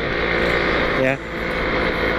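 Two-stroke motorcycle engine running steadily while riding, with wind noise on the microphone.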